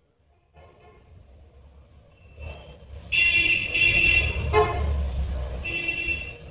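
Vehicle horns honking in several loud blasts over a low traffic rumble. The rumble comes in about half a second in, and the honks start about three seconds in.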